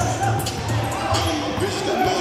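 A basketball being dribbled on a gym floor: a few bounces about half a second apart.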